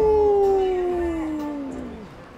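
A man's voice holding one long wordless note that slides slowly down in pitch and fades out near the end.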